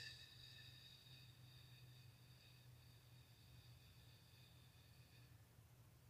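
Near silence: room tone with a faint steady low hum and a faint high whistle that stops about five seconds in.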